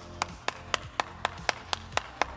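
One person clapping hands at a steady pace, about four claps a second, over background music.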